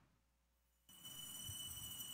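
Near silence with room tone, then a faint, steady, high-pitched tone that comes in about a second in.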